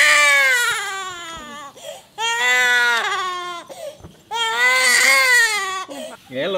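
A baby crying hard: three long wails, each falling in pitch, with short breaths between them.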